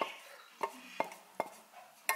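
Four light clinks of kitchenware, a pot knocking against a ceramic plate, about half a second apart, as thick cooked farina is poured out onto the plate.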